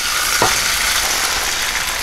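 Beaten egg sizzling steadily in a hot nonstick frying pan as it is poured in over sausage and green pepper.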